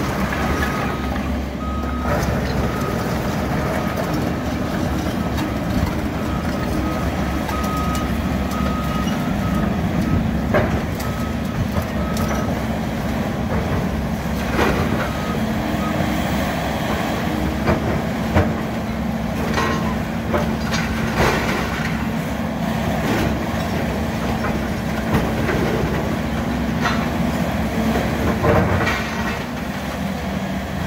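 Diesel engines of a Caterpillar excavator and a skid-steer loader running steadily while a building is demolished, with a backup alarm beeping over the first ten seconds or so. Concrete and debris crash and clatter at intervals through the rest as the excavator pulls the structure down.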